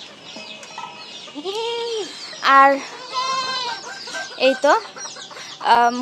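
Goats bleating for their feed, several drawn-out calls one after another, with hens clucking among them.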